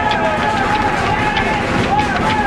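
Players' voices shouting on an outdoor football pitch just after a goal, in rising and falling calls, over a run of quick regular knocks.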